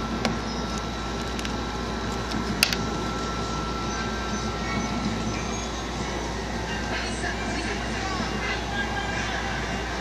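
Steady air-conditioner noise filling the room, with a faint steady whine and one sharp click about two and a half seconds in.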